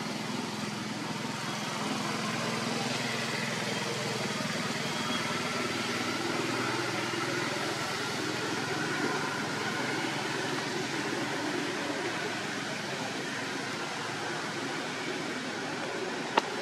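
Steady outdoor background noise, an even hiss with faint, indistinct voices in the distance.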